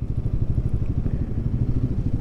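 Royal Enfield Guerrilla 450's single-cylinder 452 cc engine running steadily at low revs, its even firing pulses close to the microphone, as the bike rolls slowly.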